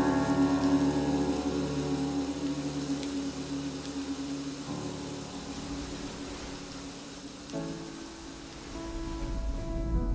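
Soft ambient music of long held tones that slowly fade, with a steady hiss of rain beneath; new sustained notes come in near the end.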